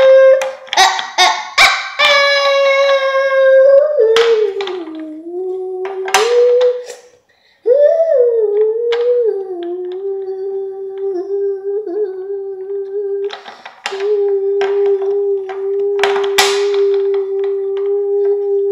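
A girl humming long, held notes with her mouth closed. The pitch wavers and dips, stops briefly about halfway, then holds nearly steady. Sharp clicks and rattles of small plastic toys and packs being handled run through it.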